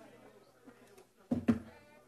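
A person's voice: a short, loud vocal sound in two quick pulses close to a microphone, about one and a half seconds in. Behind it is a low murmur of people talking in the room.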